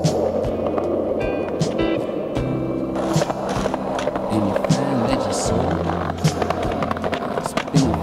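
Skateboard rolling on concrete, the wheels running steadily, with sharp clacks of the board at intervals, over a music track with a steady bass line.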